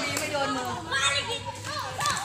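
Several voices calling out and talking over one another, lively and overlapping.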